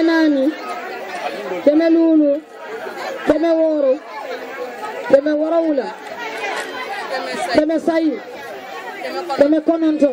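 A woman calling out through a microphone in drawn-out phrases, each rising and falling in pitch, about every second and a half, over the chatter of a crowd.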